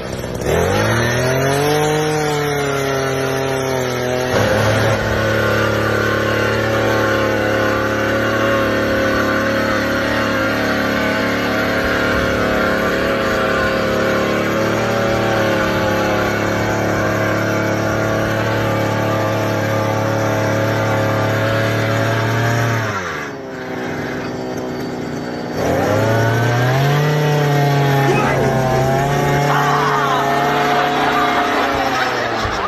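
Small engine of a motorised pole-climbing machine revving up and running steadily as it drives the climber up a utility pole. About three-quarters of the way in it is throttled back, its pitch falling to a low idle, then revved up again a few seconds later.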